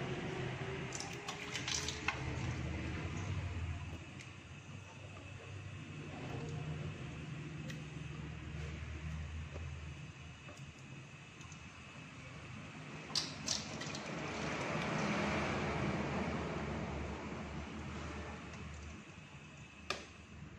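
Water sloshing and dripping in a steel pot as boiled chicken feet are lifted and moved with chopsticks, with a few sharp clicks about a second in and again near the thirteen-second mark.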